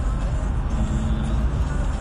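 Steady low rumble of a car's engine and road noise heard from inside the cabin.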